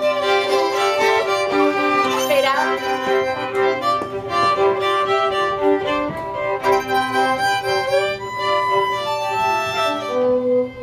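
Three fiddles bowing a tune together, with sustained notes that change every second or so and overlap into chords.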